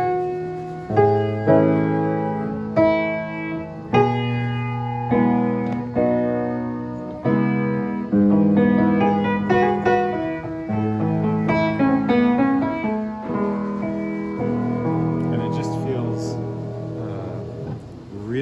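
Gulbransen baby grand piano, only about four foot seven long, played in its worn state before a full rebuild: a continuous run of chords and melody notes, each struck sharply and left to ring and fade. Its hammers, dampers and strings are due to be replaced.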